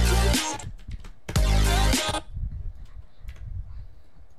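Electronic music with heavy bass played back in stop-start snippets: it cuts off about half a second in, plays again for under a second, then stops, leaving a low murmur and a few faint clicks.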